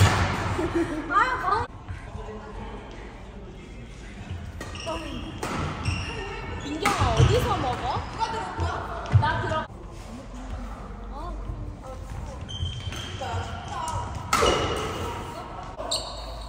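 A badminton rally: rackets striking the shuttlecock in several sharp hits, the clearest about seven and nine seconds in, heard against voices on and around the court.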